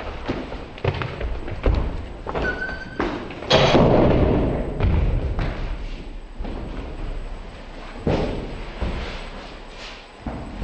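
A series of heavy thumps and bangs at uneven intervals. The loudest comes about three and a half seconds in and fades away slowly, echoing.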